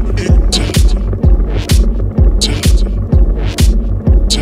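Minimal techno track: a steady kick drum about twice a second over a deep sustained bass, with scattered sharp high percussion hits.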